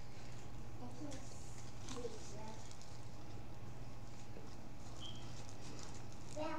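Faint chewing and mouth noises from people eating, with a few soft short sounds over a steady low hum.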